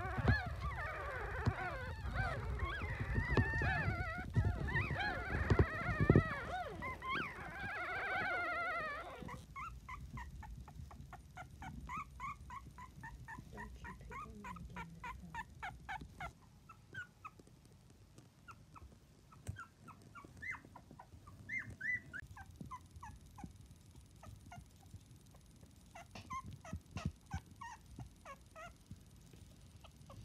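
A litter of very young miniature dachshund puppies squeaking and whining together, many overlapping cries, for about the first nine seconds. Then comes a quieter stretch of one or two puppies' short squeaks: first a quick run of them, then scattered ones.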